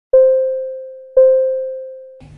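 Two identical keyboard notes, the same pitch, struck about a second apart, each ringing and slowly fading, like an electric piano.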